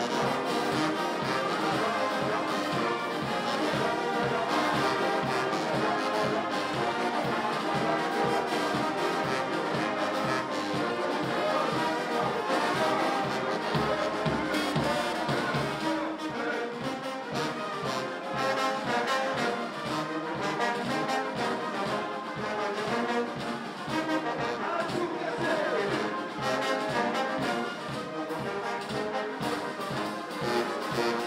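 Brass band of sousaphones, trumpets and other brass playing continuously for a processional parade, with a steady beat in the bass.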